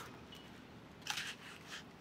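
Faint rustling and crinkling of foam packaging being pulled off a bike frame, with two soft scrapes starting about a second in.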